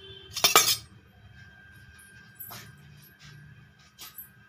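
A loud clatter of metal or glass about half a second in, then a few lighter clinks and knocks, as kitchen utensils and jars are handled.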